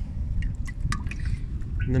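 A few quick drips and small splashes of water in a kayak's live bait well, fed by its side inlet, over a low steady rumble.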